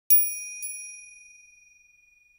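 A high, bell-like chime sound effect struck once, then lightly again about half a second later. It rings with a few clear high tones and fades away over about two seconds.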